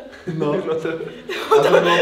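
Several people talking over one another and chuckling, louder near the end.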